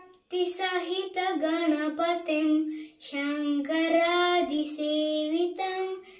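A young boy singing a devotional hymn to Ganesha solo, without accompaniment, in two long phrases of held, stepping notes with a short breath between them.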